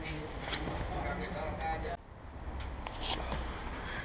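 Faint voices talking over a low background rumble, with a brief drop-out about halfway through.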